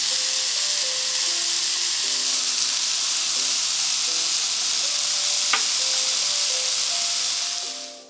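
Lamb and vegetable skewers sizzling on an indoor electric grill: a steady, dense hiss with a single click a little past halfway, fading out just before the end.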